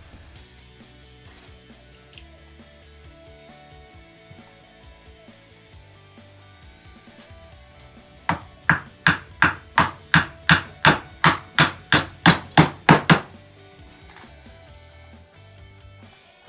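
Claw hammer driving a nail into wood: a run of about seventeen quick, even strikes, roughly three and a half a second, growing louder toward the end, starting about eight seconds in.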